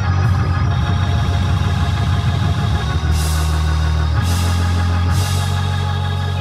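Hammond organ playing sustained full chords over a heavy bass line, with drums behind it. Three bright cymbal crashes land in the second half, about a second apart.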